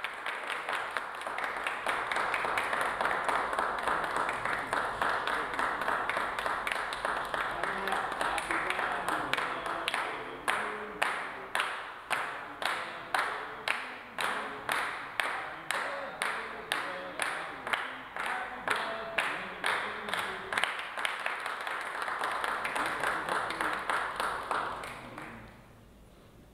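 A small group of people applauding, breaking into unison clapping at about two claps a second for ten seconds or so, then going back to loose applause that fades out near the end.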